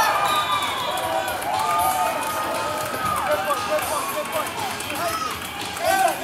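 Many voices calling and shouting at once across a children's football pitch, overlapping cries from players and people on the sideline, with one long held call about a second and a half in.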